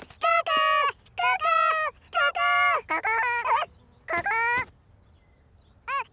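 A cartoon character's voice giving five short, high, pitched calls in quick succession, then a pause and one more call at the very end.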